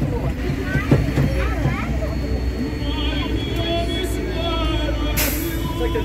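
City street traffic: a steady low vehicle rumble, with a short hiss about five seconds in.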